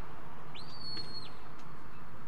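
A sheepdog handler's whistle command to a working dog: one note that slides up, holds steady for about half a second, then slides back down. A steady background hiss and rumble runs underneath.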